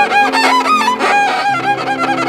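Violin played with a bow: a melody of held notes joined by quick slides, over steady lower accompanying notes.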